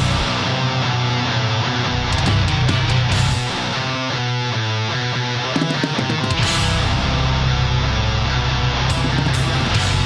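A live heavy metal band playing loud: electric guitars and bass over drums with frequent cymbal crashes, the low end growing heavier about six and a half seconds in.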